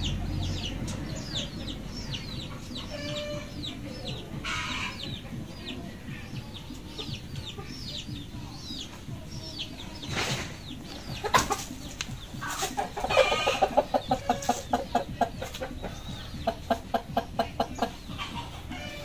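Chickens clucking, breaking into quick runs of clucks, about four a second, in the second half. Short high falling chirps repeat through the first half, and there are a couple of sharp knocks in the middle.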